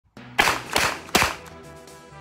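Three pistol shots in quick succession, under half a second apart, from a Glock fired in an MCK (Kit Roni) carbine conversion chassis, with background music underneath.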